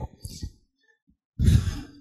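A man's audible breath close to the microphone: a brief pause, then a sharp noisy breath of about half a second just before he speaks again.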